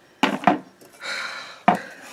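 Glass pane and parts of a cheap picture frame being handled: a few sharp clicks and taps, with a short sliding scrape about a second in and a sharper click near the end.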